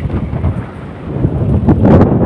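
Wind buffeting a phone microphone: a loud, uneven low rumble.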